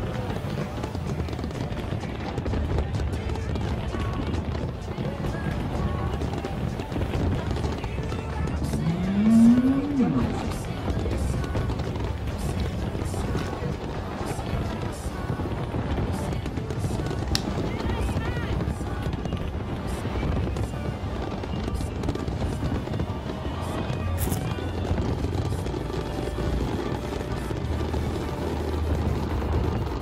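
New Year fireworks display with its crowd: a steady din of crowd voices and music, with faint scattered crackles. About nine seconds in, a single voice rises in pitch and falls, the loudest moment.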